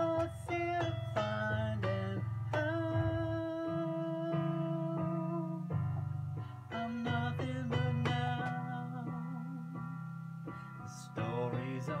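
Solo instrumental break in a song: chords strummed and held on an acoustic guitar, changing every second or two, without singing, fading a little before a new chord near the end.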